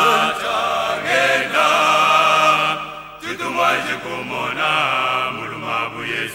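Male voice singing a slow, chant-like gospel melody in long held notes. One phrase runs through the first three seconds, and after a short dip near the middle a softer phrase follows.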